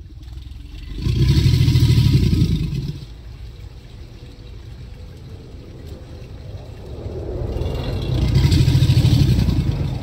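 Alligator bellowing: two long, deep, rumbling bellows, each about two seconds. The first starts about a second in and the second comes near the end.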